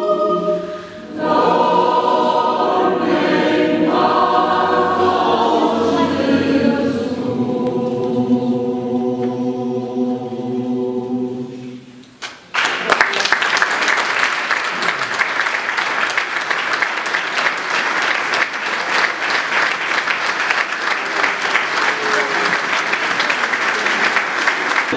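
Mixed choir of men's and women's voices singing a Christmas piece in a church; the singing ends about twelve seconds in. The audience then breaks into steady applause that continues to the end.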